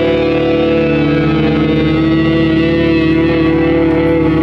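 Heavy metal band's distorted electric guitars holding one long sustained chord that rings steadily, with no drum hits.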